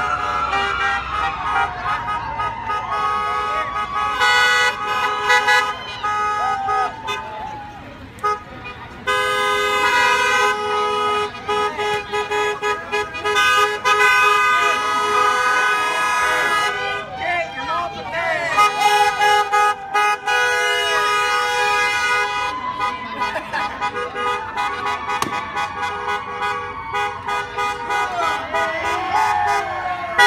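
Several car horns honking at once in long, steady blasts and shorter toots as cars drive slowly past, the longest and loudest stretch lasting several seconds in the middle. People shout and cheer over the horns.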